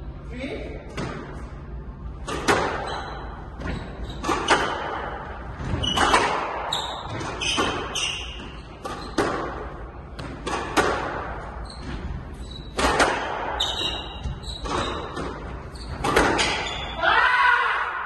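Squash ball being struck back and forth in a rally: sharp, irregularly spaced smacks of racquet on ball and ball on the court walls, about a dozen in all, each with a short echo in the hall.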